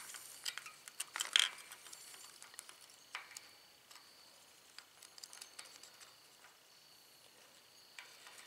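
Scattered light metal clicks and clinks of a thin metal tool working against a propane tank's level gauge head as it is turned, the loudest about a second and a half in.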